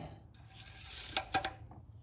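Engine oil dipstick being slid back down into its tube, a thin metal rod rubbing and scraping, with two quick clicks a little over a second in.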